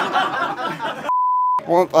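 Men talking and laughing, then the sound cuts out and a single steady high beep lasts about half a second: a censor bleep over a word.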